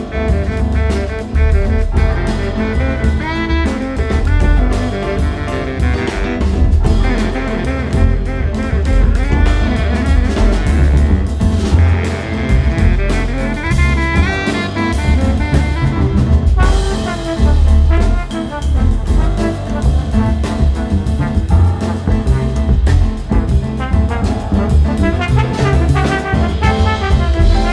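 Live instrumental jazz ensemble playing a samba arrangement, with saxophones and trombone over drum kit, piano and upright bass.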